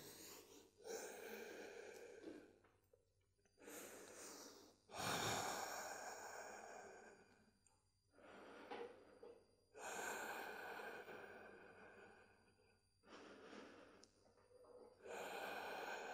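A woman breathing slowly and audibly while holding a yoga stretch: about seven quiet breaths in and out, each one to two seconds long, with short silent gaps between them.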